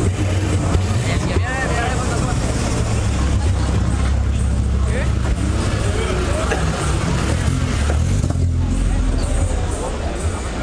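Car engines running at low speed as cars roll slowly past one after another, a steady low rumble that swells near the end, over the chatter of a crowd.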